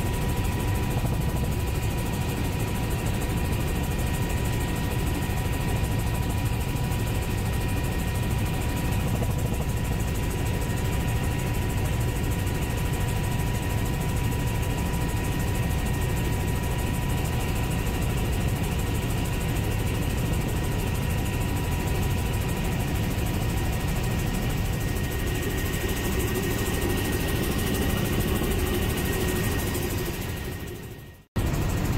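Helicopter in flight heard from inside the cabin: a steady drone of rotor and engine with a thin, steady high whine over it.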